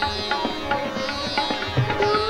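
Hindustani light-classical music, a dadra in raag Khamaj: plucked-string accompaniment and tabla strokes over a steady drone. The female voice is less prominent here, between sung phrases.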